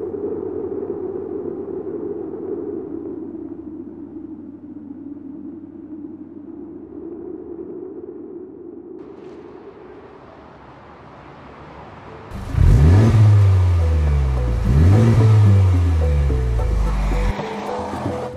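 A held musical pad gives way to a Honda Civic Type R's turbocharged four-cylinder accelerating hard, starting abruptly about twelve seconds in. Its pitch rises, drops at a gear change and rises again, then cuts off suddenly near the end.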